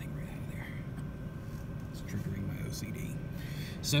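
A man muttering quietly under his breath, with a few light clicks and a faint steady high hum in the background.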